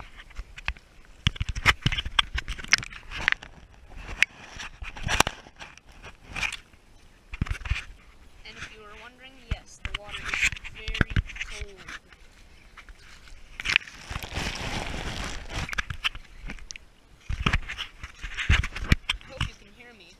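Footsteps on soggy wet grass and mud, with the knocks and rubbing of a body-worn camera, coming in uneven clumps. A short burst of rushing noise comes about two-thirds of the way through.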